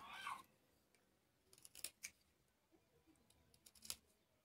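Faint snicks of a small pointed knife tip cutting into the wood of a bird-call whistle as its sound window is carved open: a few short clicks about two seconds in and again near the end, otherwise near silence.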